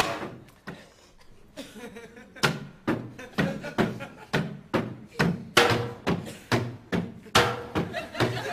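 Wooden bats repeatedly striking the bodywork of a Ford people carrier: a quieter stretch, then from about two and a half seconds in a steady run of thunks, roughly two a second.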